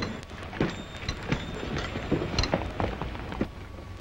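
A run of short, irregularly spaced knocks and clicks, several a second, over the steady hiss and crackle of an old film soundtrack.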